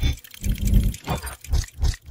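Intro-animation sound effects: a quick run of short, heavy mechanical clunks and whooshes, about five in two seconds, as of metal gears slotting into place.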